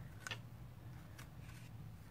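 Faint paper handling: a few soft, scattered ticks as cardstock die-cut pieces are shifted and pressed onto a card, over a low steady hum.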